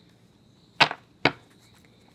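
Two sharp taps about half a second apart: round cards being set down and tapped on a wooden tabletop.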